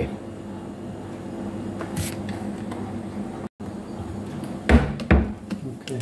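A low steady hum with a light click about two seconds in, a brief dropout, then two heavy dull knocks about half a second apart near the end, as the breakers in a distribution board are being worked on with a screwdriver.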